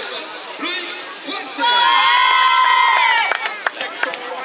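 Crowd of spectators, children among them, cheering in one loud held shout lasting about a second and a half, then a few sharp clicks near the end.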